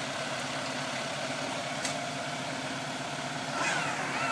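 Steady rushing noise of the e-bike's lithium battery pack burning in an open flame, with a faint click or two. A vehicle engine idles faintly underneath.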